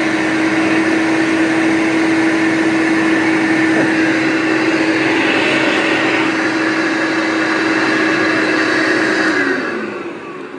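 Hoover Turbopower U1060 upright vacuum cleaner running with its suction diverted to the hose, a steady motor hum with rushing air. The hose draws almost no suction, which the owner calls rubbish. Near the end the motor is switched off and its pitch falls as it winds down.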